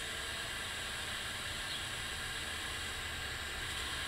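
Steady hiss with a low hum underneath, unchanging throughout, with no distinct event.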